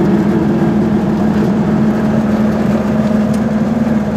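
Goggomobil's two-stroke twin-cylinder engine running at a steady pace while the car drives along, heard from inside the cabin.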